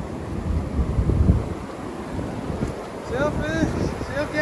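Wind buffeting the microphone over surf washing up the beach, gusting loudest about a second in.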